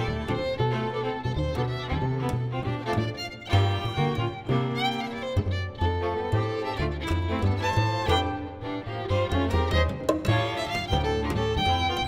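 Jazz string quartet of two violins, viola and cello playing an up-tempo ensemble passage, with the cello carrying a low moving bass line under the violins' melody.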